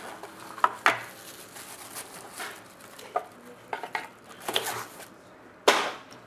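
Hard plastic graded-card slabs clacking and tapping against each other and the cardboard box as they are lifted out: a scatter of short clicks, the loudest a sharp knock near the end.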